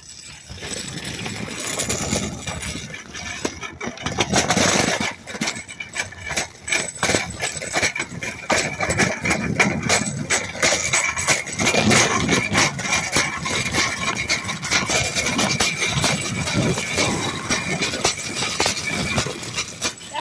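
Metal shopping cart being pushed over pavement, its wheels and wire basket rattling continuously with a rough rumble.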